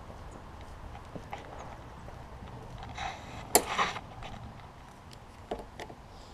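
Footsteps on an asphalt driveway and handling noise from a hand-held camera, with one sharp knock about three and a half seconds in.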